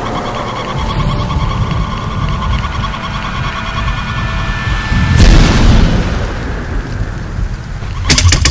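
Produced logo sound design: a steady thunder-like low rumble under a faint held musical drone, building to a loud whooshing boom about five seconds in.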